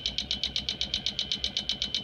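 Rapid, even clicking, about ten sharp clicks a second, from the pulse-driven contacts of a homemade electrolysis 'clacker', with each current pulse through the contacts also picked up as a click on an AM radio.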